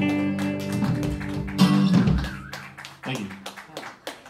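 A small live band of acoustic guitar, electric guitar and drums plays the end of a song. A held guitar chord rings, a last accented hit comes about a second and a half in, and then the sound dies away into a few scattered taps.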